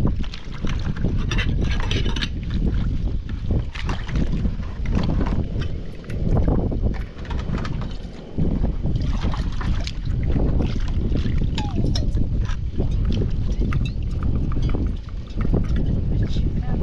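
Wind rumbling on the microphone over small clinks and splashes as a metal teapot and glass are rinsed by hand in a plastic bowl of water. About halfway through, water is poured from a plastic jug into the teapot.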